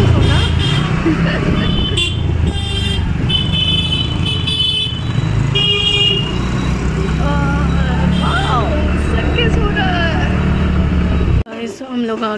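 Riding a two-wheeler through city traffic: a steady low rumble of engine and wind, with about six short vehicle horn toots along the way. The rumble cuts off suddenly near the end.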